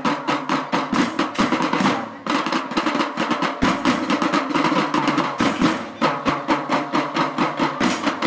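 School drum band playing live: fast, dense snare and bass drum patterns with rolls, over a sustained pitched note, pausing briefly between phrases about two seconds in and again after five seconds.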